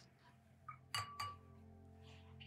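A faint, light clink of a hard object, ringing briefly, about halfway through, with a couple of small ticks just before it.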